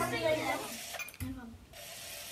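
A child's voice trailing off, then low classroom background noise with faint children's murmur; the sound changes abruptly about a second in.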